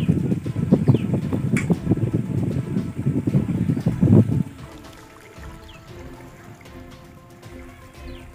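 Gusty wind buffeting the microphone with a loud low rumble for about four seconds, then dropping away suddenly. What remains is faint background music with steady tones and a few short, high bird chirps.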